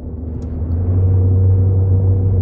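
A steady low drone with faint higher overtones; a higher held tone joins about half a second in.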